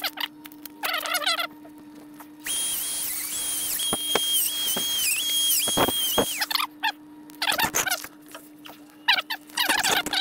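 Handheld rotary tool with a cutoff wheel running at high speed and cutting through the end of a braided stainless 8AN oil hose. It gives a steady high whine for about four seconds, starting a couple of seconds in, and the pitch dips several times as the wheel bites into the braid. Short squeaky sounds come before and after the cut.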